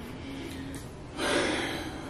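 A woman's short, breathy sigh about a second in.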